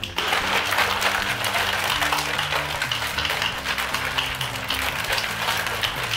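Plastic shaker bottle of water and powdered drink mix shaken hard and fast, giving a continuous sloshing rattle that lasts about six seconds, with background music underneath.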